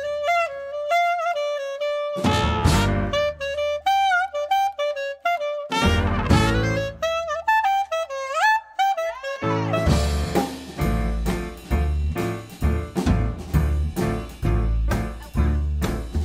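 Small traditional jazz band playing a 1920s-style blues: a lead horn melody broken by two short full-band chord hits, then the whole ensemble (trumpet, clarinet, piano, double bass and drums) comes in together about nine and a half seconds in.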